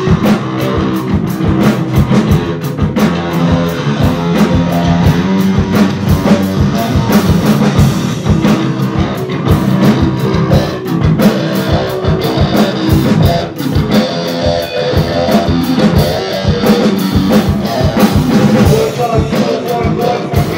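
A rock band playing an instrumental passage on electric guitar and drum kit, loud and continuous with a steady beat.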